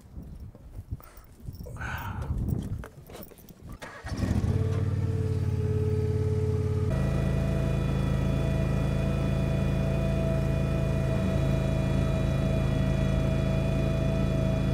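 A John Deere riding reel mower's engine starts about four seconds in and then runs steadily; from about seven seconds in it runs louder, with a higher tone added. Before the engine, only a few faint knocks.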